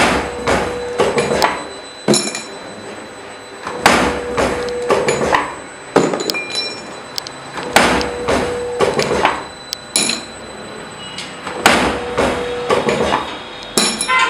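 Automatic scaffolding G pin making machine cycling about every two seconds: each stroke of the press head gives a sharp metal clank followed by a few lighter clatters, with a brief steady hum between strokes.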